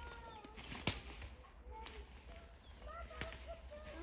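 Dry leaf litter and twigs crackling as a small child handles them, with two sharper snaps, one about a second in and one about three seconds in. Faint short high-pitched calls sound in the background.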